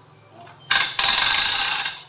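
Hand-crank cable winch being worked: its gears and ratchet give a loud, dense mechanical rattle lasting just over a second, starting a little before the midpoint and breaking briefly after its first moment.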